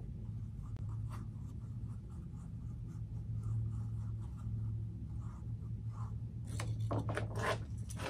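Light scratching and rubbing as two-part epoxy is worked with a thin wooden stick on small wooden wedges, over a steady low hum.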